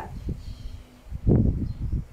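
Wind buffeting the microphone: a loud low rumble that starts just over a second in.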